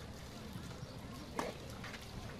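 Tennis ball in a rally on a clay court: one sharp racket-on-ball pop about one and a half seconds in, then a softer knock shortly after, over a low background murmur.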